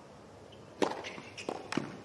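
Tennis racket striking the ball: a sharp pop of the serve a little under a second in, then two more sharp hits in quick succession as the ball is returned and played at the net.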